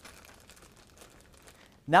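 Faint handling noise as fingers turn a small screw on the underside of a video-conferencing base unit: soft scraping with a few light ticks.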